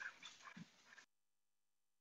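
Near silence: a faint, fading sound in the first second, then the audio drops to complete silence.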